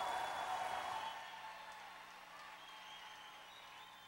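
Concert audience applauding and cheering, with a few high whistles, fading steadily away.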